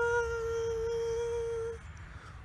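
A woman's voice holding one long sung note at a steady pitch, fading out just before two seconds in.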